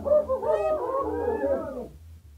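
Several voices calling out together in high, overlapping, gliding cries right after the string music stops, fading out near the end.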